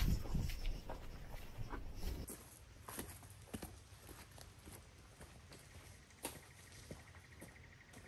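Footsteps on dry leaf litter and twigs, fading as the walker moves away, after close rustling and bumping at the microphone at the start. A steady, fast-pulsing insect call starts about six seconds in.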